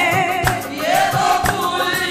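Qawwali: voices singing a wavering, gliding melody together over a drum beat of about two strokes a second.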